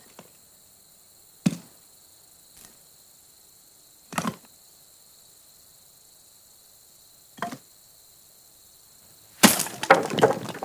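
Pieces of firewood dropped one at a time into a brick fire pit, five separate wooden knocks a second or more apart, then a loud clatter of many pieces tumbling in near the end as the basket is emptied.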